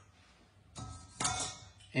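A stainless-steel sieve handled over a steel pan after hot milk has been poured through it: a brief scrape with one light metallic clink about a second in.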